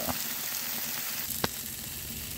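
Smashburger patties sizzling on an oiled flat-top gas griddle, a steady frying hiss, with one sharp click about one and a half seconds in.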